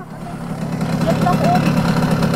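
Simson moped's two-stroke single-cylinder engine idling in neutral with an even, pulsing beat, still running while the rider looks for how to switch it off.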